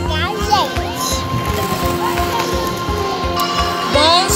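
Background music with a steady beat, with a child's high excited voice over it in the first second.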